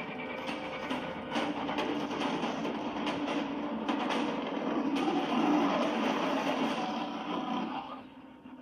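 Movie trailer soundtrack of music with several sharp percussive hits, played through cinema speakers. It drops away abruptly just before the end.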